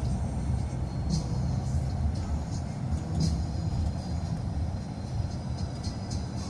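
Low, steady engine and road rumble heard from inside a moving road vehicle, with a few light rattles.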